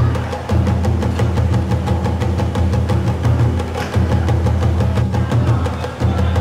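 Background music with a steady drum beat over a heavy bass line.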